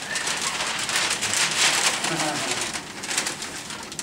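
Large brown paper bag rustling and crinkling as it is opened and something is pulled out of it, easing off near the end, with some laughter underneath.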